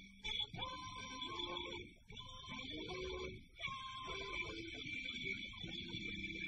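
Alto saxophone playing held notes that slide into pitch, over a small jump-blues band with upright bass and guitar, with a woman's voice singing along.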